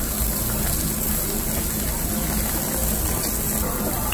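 Meat slices sizzling on a tabletop gas yakiniku grill, over the steady low rush of the gas burner.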